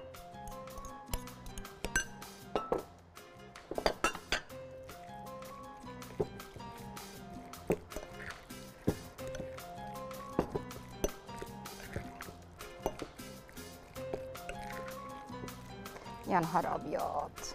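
Clinks of a spoon and bowl against glass as diced cucumber is tipped into a glass salad bowl and stirred, with background music.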